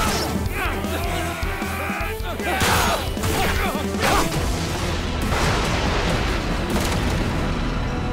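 Dramatic action-scene music under fight sound effects: a villain's laugh over the first couple of seconds, then a few crashing impact hits through the middle.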